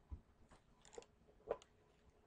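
Near silence with four or five faint, short clicks spread across the two seconds.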